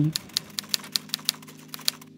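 Typewriter key-click sound effect: a quick, even run of about a dozen sharp clicks, roughly six a second, with a soft steady low drone underneath.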